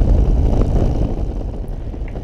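Heavy wind buffeting on the camera microphone of a motorcycle riding at highway speed: a loud, steady low rumble that swamps everything else on the recording.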